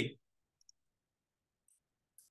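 The end of a spoken word, then two faint, quick clicks about half a second in and one more near the end, from characters being entered into calculator software on a computer.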